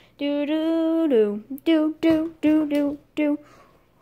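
A person singing a wordless 'do do do' montage tune: one long held note, then a run of short, separate notes.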